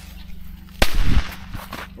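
A small firecracker going off: one sharp bang just under a second in, with a short loud tail.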